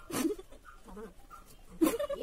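Close-up eating noises of people chewing dhokla without using their hands, with two short, loud breathy bursts, one just after the start and one near the end.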